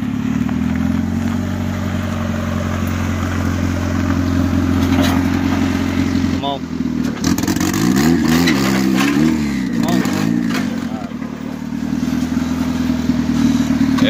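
Turbocharged Honda D16 single-cam VTEC four-cylinder idling steadily. About halfway through it is revved up and down several times in quick succession, then drops back to idle.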